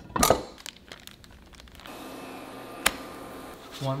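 Parchment paper crinkling and rustling as a freshly pressed corn tortilla is handled and peeled from a tortilla press, loudest just after the start. Later come a soft steady hiss and one sharp click.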